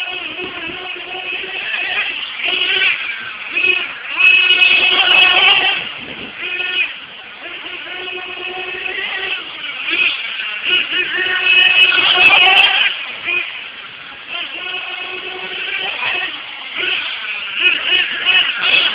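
1/8-scale RC late model car's small engine revving up and falling off again and again as it laps a dirt oval, loudest in two surges.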